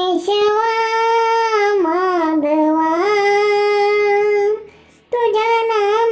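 A child singing a Marathi devotional prayer solo, holding long notes that waver and slide in pitch, with a short break for breath about five seconds in.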